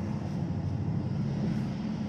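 A steady low background drone with no distinct strokes or clicks.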